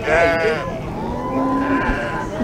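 Sheep bleating in a crowded pen: a loud, wavering bleat right at the start, then a longer, steadier bleat about a second in.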